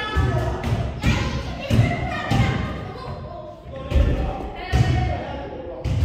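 Basketball being dribbled on a hardwood gym floor: a run of low thuds about two a second, a short pause in the middle, then dribbling again, echoing in a large hall.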